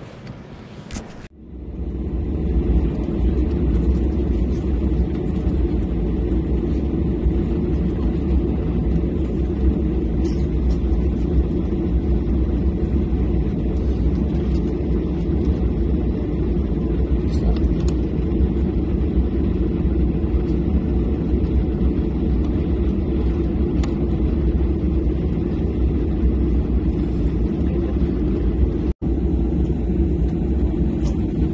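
Steady low rumble inside a parked airliner's cabin while it is being deiced. It starts abruptly about a second in, after a quieter stretch of terminal hall ambience, and drops out for an instant near the end.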